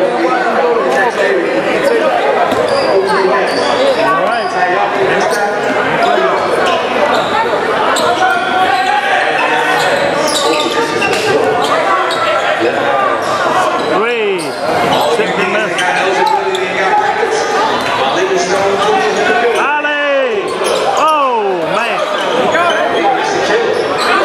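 Basketball being dribbled on a hardwood gym court, with players' and spectators' voices echoing in the hall throughout.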